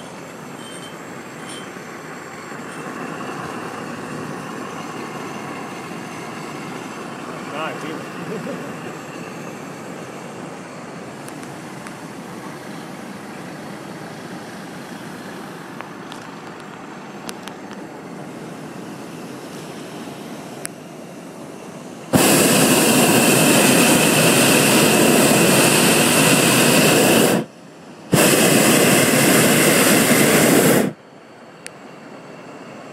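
Hot-air balloon's propane burner firing: a sudden loud roar about two-thirds of the way through, held for about five seconds, a brief break, then a second blast near the end. Before it there is only a low, steady hiss.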